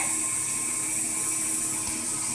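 Steady background hiss with a high whine and faint humming tones, unchanged throughout, with a faint low knock near the end.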